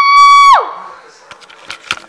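A loud, high-pitched vocal squeal held on one steady note, ending about half a second in with a quick slide downward, followed by a few faint knocks.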